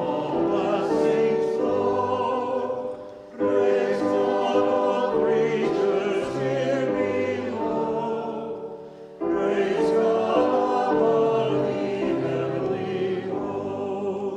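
Congregation singing a hymn to organ accompaniment, in sung phrases with short breaks about three and nine seconds in.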